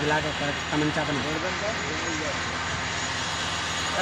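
Indistinct talking for the first two seconds or so, over a steady background of noise and a low hum that carries on throughout.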